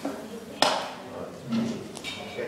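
A single sharp tap about half a second in, ringing briefly, with faint voices in the room.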